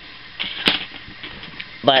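A pause in speech with a single sharp click about two-thirds of a second in.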